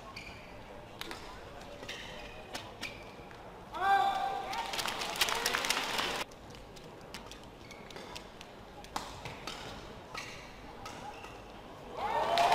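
Badminton rally: sharp racket strikes on the shuttlecock, then about four seconds in a shout and a burst of crowd cheering and applause that stops suddenly about two seconds later as the point ends. After that, a few scattered knocks and clicks in the quieter hall.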